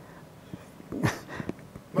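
A pause in conversation: quiet room tone, then from about halfway a man's short breathy vocal sounds with a few small clicks.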